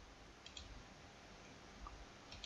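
Near silence with a couple of faint computer mouse clicks about half a second in, and another faint click near the end.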